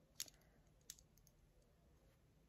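Near silence broken by two light clicks of small jars of chrome nail powder being handled on a table, the first just after the start and a fainter one about a second in.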